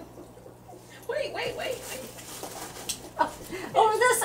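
Indistinct women's voices and laughter, with a single short click about three seconds in.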